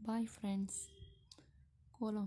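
A voice speaking briefly, then a single short click a little over a second in.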